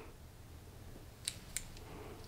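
Quiet room with two faint, sharp clicks a third of a second apart just past the middle, from a metal lipstick tube being handled as it is raised to the lips.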